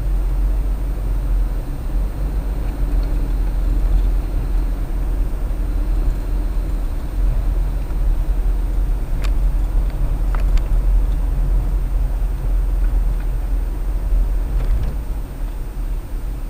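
Steady low rumble of a car being driven, engine and tyre noise heard from inside the cabin. A few short clicks stand out about nine to ten and a half seconds in.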